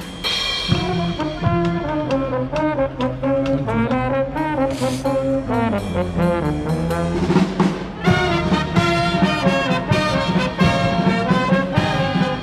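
Military brass band playing live: trumpets, trombones and saxophones carrying a melody over a drum beat. The middle turns to softer held low notes, and the full band comes back in louder about eight seconds in.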